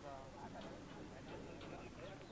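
Faint, indistinct voices of people talking, too far off or too low for any words to carry.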